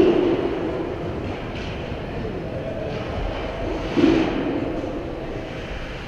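A steady rumbling din of an ice rink during play, with louder swells at the start and about four seconds in.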